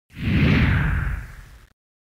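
A transition whoosh sound effect with a deep rumble underneath: it swells quickly, its hiss falling in pitch, then fades away and stops shortly before the end.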